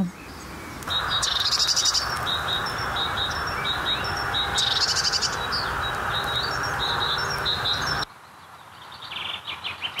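Great tit singing: short high notes repeated in quick phrases, over a steady hiss. A little after eight seconds the hiss stops suddenly and only a few fainter chirps remain.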